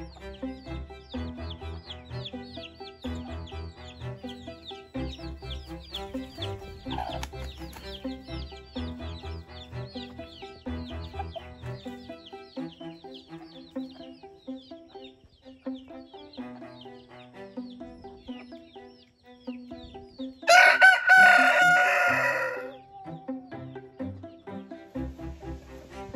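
A rooster crows once near the end, loud and about two seconds long, over steady background music with a repeating beat.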